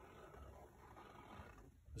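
Near silence, with a faint soft rustle of cotton fabric being handled on a cutting table.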